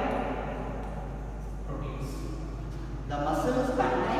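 A man's voice speaking in a lecture, with a pause in the middle, over a steady low hum.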